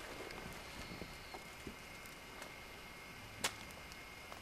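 Faint crackling and snapping of dry twigs and brush as a person crawls through a tangle of briar and fallen branches, with one sharper snap about three and a half seconds in.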